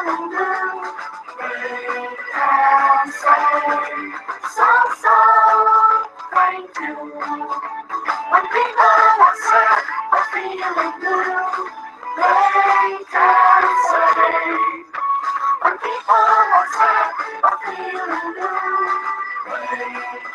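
A woman singing a children's song in phrases with short breaks.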